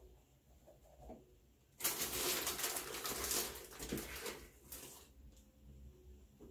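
A plastic measuring scoop scraping and rustling in a tub of powder hair lightener (Clairol BW2) as a cupful is measured out. The rustling starts about two seconds in, runs for about three seconds and then fades.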